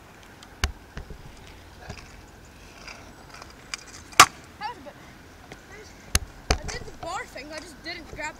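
Stunt scooter clacking on asphalt: sharp single impacts of the deck and wheels hitting the ground. The loudest comes about four seconds in as the rider comes down from a trick, with two more close together about two seconds later.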